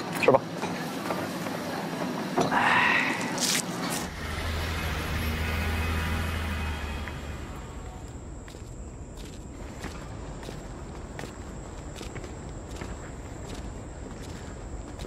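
Open-air eatery ambience with background chatter and a clink of dishes, giving way after about four seconds to a low steady hum. In the second half come footsteps on pavement at an even walking pace, about two a second, over a thin steady high tone.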